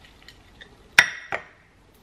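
A small frying pan clinks against a ceramic plate as a fried egg is slid off onto toast: one sharp clink with a brief ring about a second in, then a fainter one just after.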